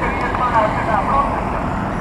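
Indistinct voices of a protest crowd talking, heard across a street, over a steady low outdoor rumble of wind and street noise.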